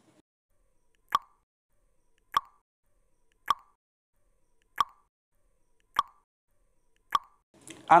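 Countdown timer sound effect: six short ticks evenly spaced about 1.2 seconds apart, with silence between them.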